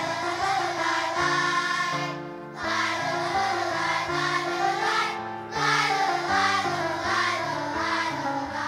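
A large children's choir singing in unison, in phrases with short breaths between them about two and five seconds in.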